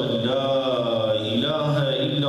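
A man chanting Arabic liturgical phrases into a microphone. He holds one long melodic line whose pitch slowly wavers, without the breaks of speech.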